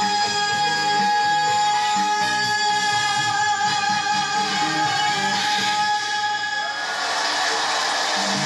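Live Korean trot song with band backing, reaching its ending: a female singer holds one long steady note for about seven seconds. The note then stops and the accompaniment turns to a brighter, noisier wash.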